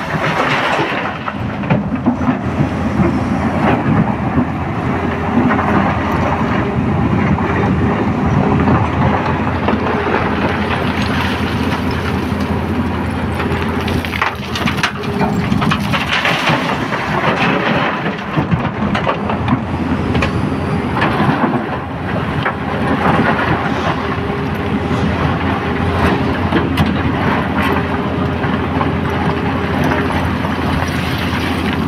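Tata Hitachi hydraulic excavator's diesel engine running steadily under load while broken quarry rock crashes and rumbles out of its bucket into a steel dump-truck body, with irregular cracks and thuds of stones hitting the bed.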